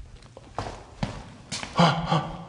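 Footsteps on a hard floor, about two a second, the last one loudest, with a short breath or grunt close to the microphone near the end.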